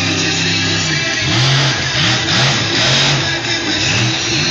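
Bigfoot monster truck's engine held steady at high revs on the run-up, then from about a second in its revs falling and rising in several surges as it jumps and lands over a row of cars. Music from the arena PA plays underneath.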